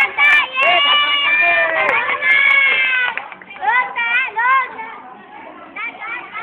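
Several high children's voices shouting and cheering together, with long held shouts in the first three seconds, then quieter calls toward the end.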